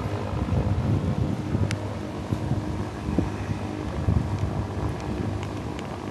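A steady low engine hum under gusting wind rumble on the microphone, with a single sharp click a little under two seconds in.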